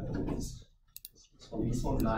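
A man talking, broken by a quiet gap with a single sharp computer click about a second in.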